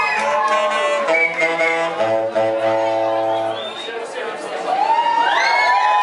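Live rock band ending a song on a held, ringing chord that cuts off a little under four seconds in. Then the crowd whoops and cheers.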